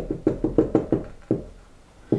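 Marker tip tapping on a glass whiteboard as short dashes are drawn: a quick run of knocks, about six a second, that stops about a second and a half in.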